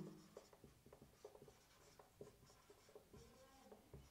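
Faint, irregular strokes and taps of a marker pen writing on a whiteboard.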